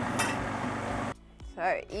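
Food processor motor running as it purées cauliflower soup with milk, a steady whirring roar that cuts off about a second in.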